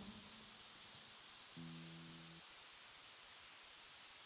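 Near silence on a stage, broken by one short, faint held note from an instrument about a second and a half in.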